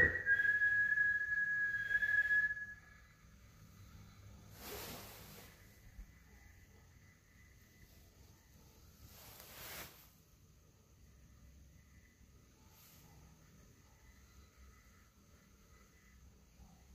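A person whistling one long note that slides up and then holds steady for about three seconds. Later come two soft rushing sounds, each about a second long.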